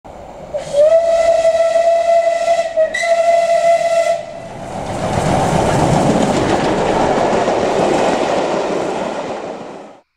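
A steam locomotive whistle sounds twice in quick succession, a long blast then a shorter one, ending about four seconds in. A loud, steady rushing noise then swells and fades out.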